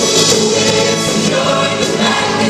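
A large school choir of mixed male and female voices singing an upbeat song, loud and continuous.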